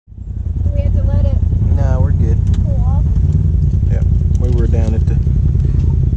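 Side-by-side UTV engine running at a steady, even level, heard from inside the open cab, with voices talking over it.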